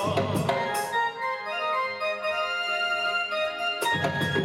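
Instrumental music without singing: a keyboard plays a held melody over sustained chords. The percussion drops out about half a second in and comes back just before the end.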